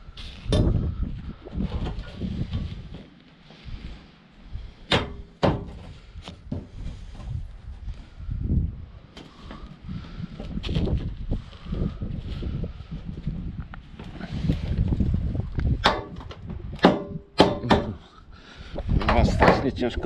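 Sharp metallic clicks and knocks, irregularly spaced, as a metal gutter connector is worked and pressed onto the joint between two steel gutter sections, over rustling and handling of the gutter by gloved hands.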